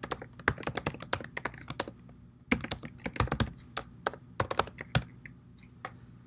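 Typing on a computer keyboard: two quick runs of keystrokes with a short pause between them, then a single key press near the end.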